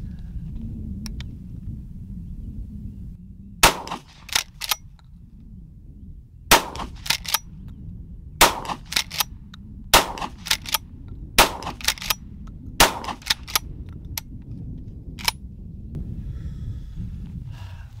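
Rock Island Armory All Gen 12-gauge pump shotgun fired six times in steady succession, each shot followed by the two quick clacks of the pump being worked back and forward. One more lone clack comes near the end.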